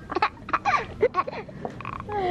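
Laughter in a string of short, broken bursts with gliding pitch.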